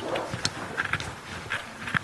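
Scattered light clicks and knocks over a faint murmur of room noise.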